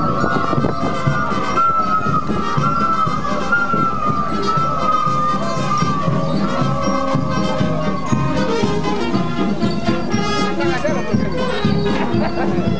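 Live festival procession music: a high wind-instrument melody carries on without a break over lower accompanying notes, with crowd voices mixed in.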